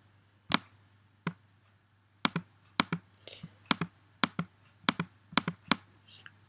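Computer mouse buttons clicking about ten times at irregular intervals, some in quick pairs, as brush strokes are painted in an image editor. A faint steady low hum runs underneath.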